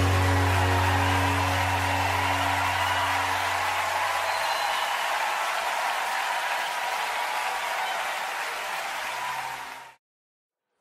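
The final held chord of a live worship band dies away over the first four seconds while the crowd applauds. The applause then thins and fades out quickly, cutting to silence at the end.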